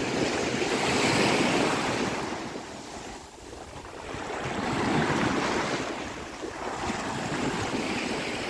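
Small Mediterranean waves washing in and breaking in foam on a sandy shore. The surf swells and eases twice, about four seconds apart. Wind rumbles on the microphone underneath.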